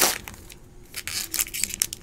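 Faint crinkling of a foil trading-card pack wrapper and light ticks of cards being slid out of it, with a sharper click at the very start.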